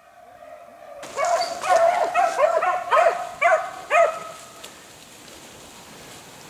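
Beagles baying on a rabbit's trail while running it: a quick run of seven or eight yelping, arched calls starting about a second in, dying away after about four seconds.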